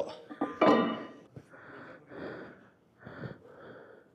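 A man breathing hard: a short vocal sound about half a second in, then a run of about five audible breaths in and out.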